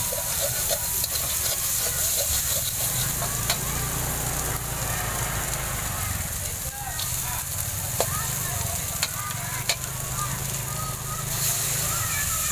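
Egg and shredded jicama frying in a metal wok, a steady sizzle with the metal spatula scraping and clinking against the pan a few times.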